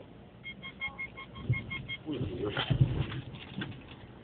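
A rapid run of short, high electronic beeps, about six a second, lasting about a second and a half, inside a car cabin. After them comes a louder stretch of a muffled voice over low rumbling.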